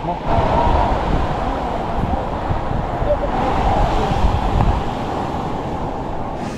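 Surf washing up on a sandy beach, with heavy wind buffeting the microphone.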